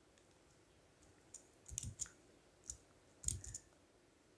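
Faint clicks from a computer mouse and keyboard: two single clicks and two short clusters of clicks, beginning about a second in.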